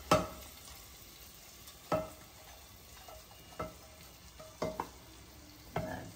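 About six sharp knocks at irregular intervals as a spatula is tapped and scraped against a tilted non-stick frying pan to empty tempering (tadka) into a pot of dal. The pan rings briefly after each knock.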